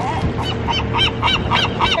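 A seagull calling: a quick series of about half a dozen short, yelping notes, roughly four a second, starting about half a second in. Low wind rumble on the microphone runs underneath.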